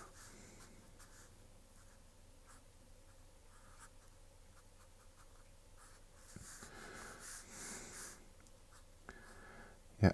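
Faint scratching of a fineliner pen drawing on paper, in short strokes. Near the end comes a longer, louder run of close strokes as a shape is filled in solid black.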